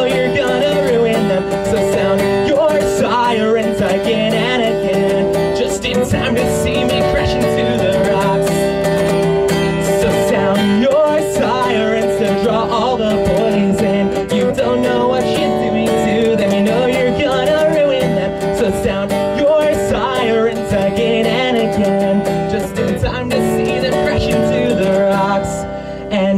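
Acoustic guitar strummed steadily while a man sings, a live solo performance.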